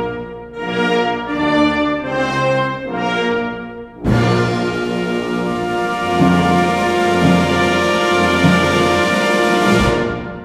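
An orchestra's brass section (trumpets, trombones, tubas) plays sustained chords in short phrases. About four seconds in, a louder, fuller ensemble chord enters suddenly and is held over a moving bass line, then cut off together at the very end, leaving the hall ringing.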